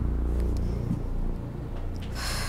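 A woman's low groan of pain, with hard gasping breath starting as it ends.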